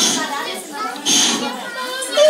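Children's voices and chatter during a group game, with a brief louder burst of voices about a second in.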